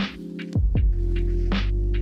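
Lo-fi hip-hop music: a slow beat with a deep bass drum whose pitch drops quickly and sharp hits about every one and a half seconds, over a bass line and held keyboard chords.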